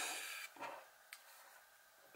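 A short scraping rub of a small paper label being handled on a cutting mat, fading out about half a second in, followed by a faint light click just after a second.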